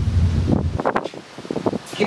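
Wind buffeting a handheld microphone: a loud low rumble that stops abruptly about 0.8 s in, followed by short fragments of a man's voice through the microphone.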